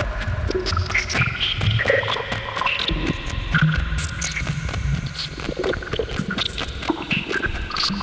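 Ambient electronica from analogue and Eurorack modular synthesizers: a busy sequence of short, scattered synth blips over a pulsing bass, with fine ticking clicks throughout.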